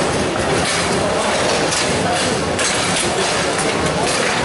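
Foosball play: a steady, dense clatter of ball knocks and rod clacks, with the continuous noise of a busy tournament hall.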